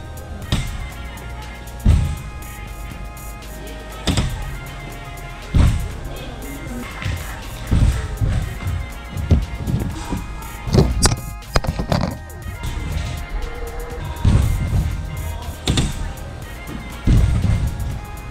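Background music over a rider's wheels landing on a wooden skatepark ramp: repeated sharp thuds and knocks every second or two, with rolling between them, during attempts at a 3-whip trick.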